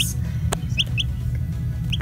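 Dominique chick peeping: three short, high, rising peeps, over background music, with one sharp click about a quarter of the way in.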